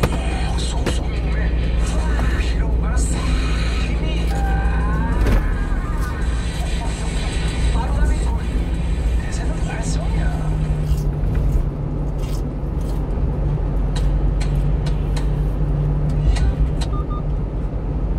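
Steady engine and road rumble inside a 1-ton box truck's cab at highway speed. Radio talk and music play under it.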